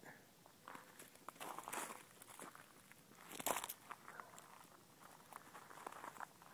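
Faint footsteps crunching through dry winter grass and dead leaves, irregular, with one louder crunch a little past halfway.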